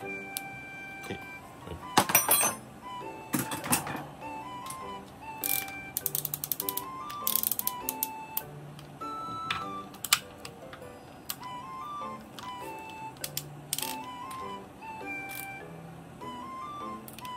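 Background music with a light, stepping melody throughout. Over it, short runs of rapid clicking from a ratchet wrench run down a nut on a rear shock absorber's shaft, about two, four and seven seconds in.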